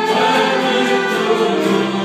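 Mixed choir of young men and women singing a hymn in Romanian, holding long notes together.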